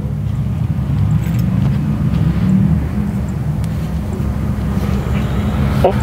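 Dark Crystal Ghost Amp, a modified speaker running ghost-box software through noise filters, putting out a steady low rumbling noise that wavers in level.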